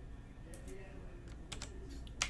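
A few keystrokes on a computer keyboard: a couple of clicks about half a second in and a quick cluster near the end.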